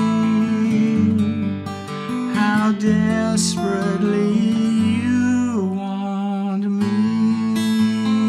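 A man singing over a strummed acoustic guitar.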